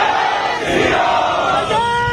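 A large crowd of protesters shouting a slogan together in call-and-response, a dense mass of voices. Near the end one man's voice starts the next call.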